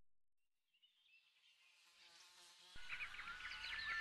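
Near silence, then about three-quarters of the way through, a wildlife sound effect of many short, high chirps starts up and keeps going.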